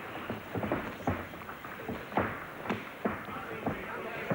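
A string of irregular sharp thuds from boxers' feet on the ring canvas and gloves landing, over steady crowd noise with voices in it.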